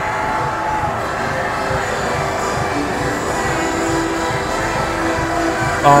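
Steady roar of a packed stadium crowd with music playing over the stadium's sound system, a held tone entering about halfway through.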